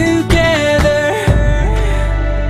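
A song with a sung melody over a drum beat; a little past halfway the drums drop out, leaving a held low note under the voice.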